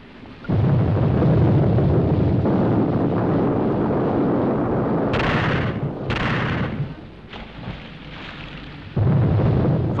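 Salvos from a frigate's Limbo anti-submarine mortar: a sudden heavy blast about half a second in that rumbles on for several seconds and dies down near seven seconds, then a second sudden blast near the end.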